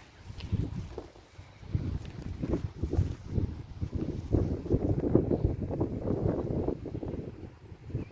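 Close, irregular rustling and low bumps on the microphone as grass blades brush against it, heaviest through the middle and second half.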